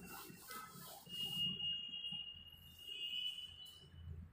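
A thin, high-pitched steady tone, like a faint whistle, begins about a second in and holds for nearly three seconds over quiet room noise, after a short hissing rustle.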